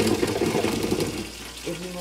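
Food sizzling as it fries in hot oil, a steady hiss throughout, with a louder rough noise over the first second or so. A voice begins near the end.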